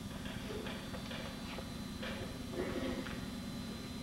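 Paintbrush dabbing and stroking paint onto watercolour paper: faint, irregular soft taps over a steady low hum.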